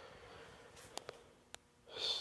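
Near silence: faint room tone with a few soft clicks about a second in, and a breath just before the end.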